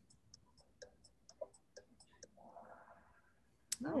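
Kahoot quiz countdown timer ticking faintly at about three ticks a second as the clock runs down to zero, stopping a little over two seconds in. A brief soft rush follows, and a sharp click comes near the end.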